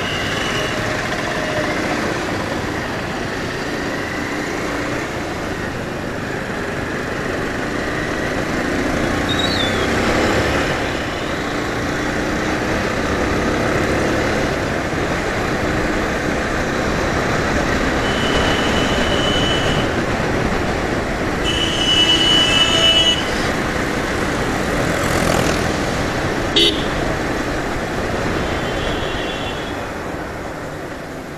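Motorcycle riding through traffic: steady engine, road and wind noise on the helmet microphone, with two vehicle horn honks, the second and louder one about three-quarters of the way through.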